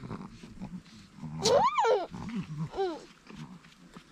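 Chihuahua puppies at play: one loud yelp that rises and falls in pitch about one and a half seconds in, then a shorter, fainter yelp near three seconds.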